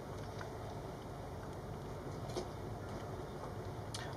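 Faint chewing of a mouthful of tuna: a few soft mouth clicks over a steady low hum.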